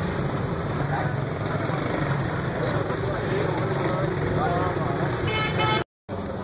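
Steady street background noise with faint voices, and a vehicle horn tooting briefly near the end. The audio then cuts out abruptly for a moment.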